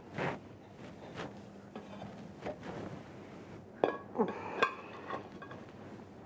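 Metal kitchenware knocking and clinking as a boiled lobster is lifted from a stockpot in a metal insert and set on a plate with a skimmer: a few soft knocks, then a quick run of sharp, ringing clinks about four seconds in.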